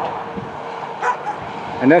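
Wind on the microphone with dogs barking faintly in the distance, in a pause between a man's words; his voice comes back near the end.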